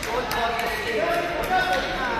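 Indistinct voices in a large, echoing sports hall, with a couple of short sharp knocks.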